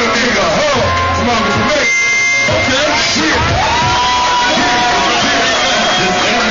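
Loud live hip-hop music with a man's voice on the microphone over the beat; the bass drops out briefly about two seconds in.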